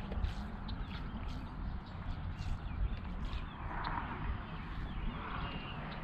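Wind buffeting the microphone and water lapping against the hull of a fishing boat, with scattered small clicks and knocks. A brief soft splash-like hiss comes about four seconds in, and a fainter one a second later.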